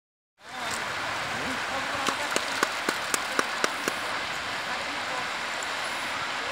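Steady noise of surf and wind on a beach. About two seconds in comes a quick run of about eight sharp clicks, roughly four a second, lasting just under two seconds.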